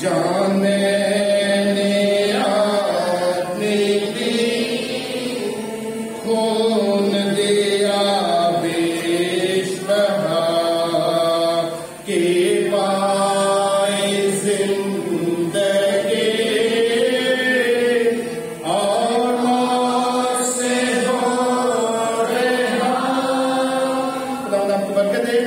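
A man's voice singing a hymn in long, held phrases with brief breaks between them.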